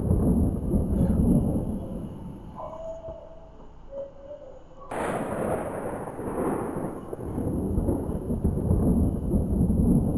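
Rolling thunder: a deep rumble, loud at first, fades away. About halfway through a second rumble starts suddenly and builds to a peak near the end.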